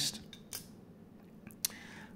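A few light clicks over quiet room tone, the sharpest near the end, as a hand handles a slot car's plastic chassis on a setup board.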